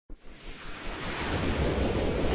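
Intro whoosh sound effect: a wind-like rushing noise swelling up from silence with a deep rumble underneath, opened by a brief tick.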